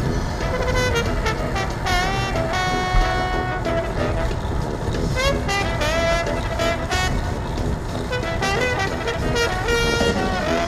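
Music with a pitched, gliding melody line and held notes, over a steady low rumble of wind on the microphone of a moving bicycle.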